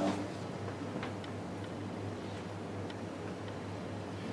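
Quiet room tone: a steady low hum, with a few faint, scattered ticks.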